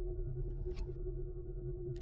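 Electronic logo-sting sound design: a steady low rumbling drone with a held hum, a faint brief swish about three-quarters of a second in, and a sharp hit right at the end.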